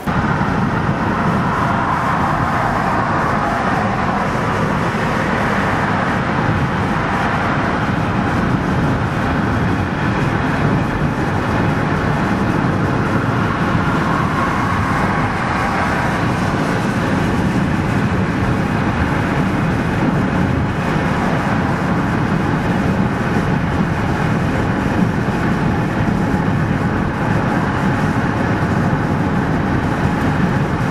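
Steady road noise from inside a car cruising on a highway: a continuous rush of tyres and wind with the engine underneath, unchanging throughout.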